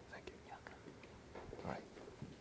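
Faint low voices murmuring, close to a whisper, with a few small clicks.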